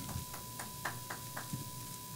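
Quiet room tone in a microphone-fed hearing room, with a steady faint high tone and a quick run of five or six light clicks, about four a second, that stop about a second and a half in.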